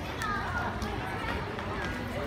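Indistinct voices of people talking, over steady outdoor background noise with a low rumble.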